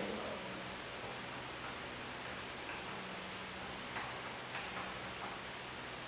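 Steady room hiss with a low hum, and a few faint taps of chalk on a blackboard about four seconds in.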